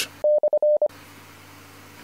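A short string of Morse-code-style beeps at one steady, mid pitch, long and short tones keyed in under a second, sounding as a break between two items of a ham-radio news bulletin; then faint hiss.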